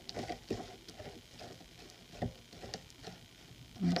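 A palette knife spreading thick embossing paste across a stencil on paper: faint, irregular scrapes and soft clicks, with one slightly louder click a little past the middle.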